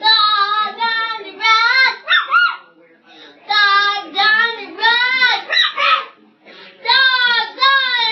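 A young child's high voice vocalising in long, wavering sing-song phrases, with short breaks between them.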